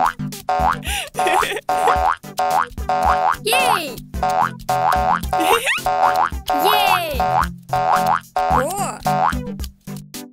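Cartoon 'boing' sound effects, several short springy pitch glides, as characters bounce on water-filled cushions, over bouncy background music with a steady beat.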